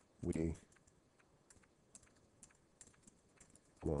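Computer keyboard typing: a string of light, irregular keystrokes.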